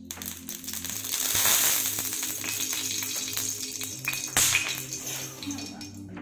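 Cooking oil poured from a squeeze bottle onto a hot flat tawa, sizzling, loudest about a second and a half in, with a sharp click about four seconds in. Background music with low repeating notes plays underneath.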